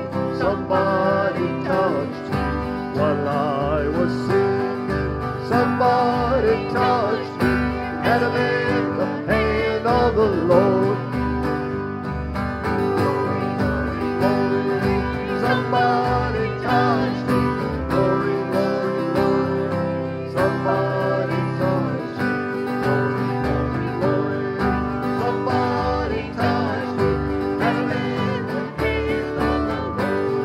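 Small acoustic country-gospel band playing: strummed acoustic guitars over a plucked upright bass keeping a steady beat, with a wavering melody line on top.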